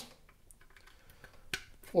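A small plastic click about one and a half seconds in as a charging cable's plug is pushed home into the port on the back of a magnetic wireless charging pad, amid otherwise very quiet handling.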